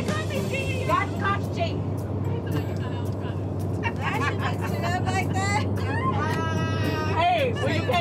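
Steady low drone of a private jet's cabin, with women's voices and laughter over it.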